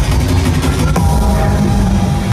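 Loud electronic bass music (drum and bass) playing live over a large venue sound system, with a heavy, dense low end. A new pitched synth line cuts in about a second in.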